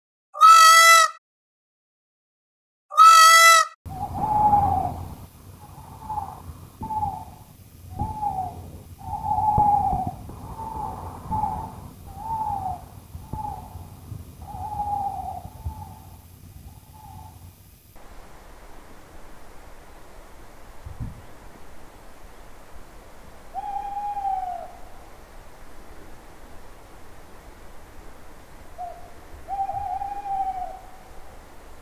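Two loud, drawn-out peacock calls in the first few seconds. Then comes a run of short owl hoots, about one a second, until about eighteen seconds in. After that there is a faint steady hiss with a couple of single owl hoots.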